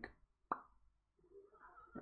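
Quiet pause broken by a single short pop about half a second in, followed by faint, soft noise.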